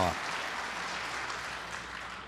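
Audience applause, an even patter of many hands clapping that slowly dies away.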